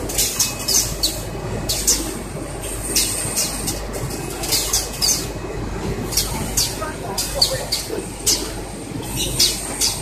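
Semi-automatic pet underpad packaging machine running: short sharp air hisses from its pneumatic cylinders, often in quick pairs about a second apart, over a steady machine hum and a thin high whine.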